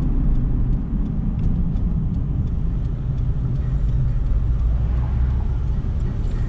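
Steady low rumble of a car's engine and tyres heard from inside the cabin while driving slowly through town, with faint regular ticks.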